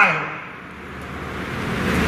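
A pause in a speech over a public-address system: the man's last word trails off with a short echo, then a steady background hiss and murmur that slowly grows louder toward the end.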